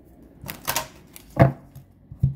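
A deck of oracle cards handled and shuffled by hand: a quick clatter of cards about half a second in, then one sharp knock, the loudest sound.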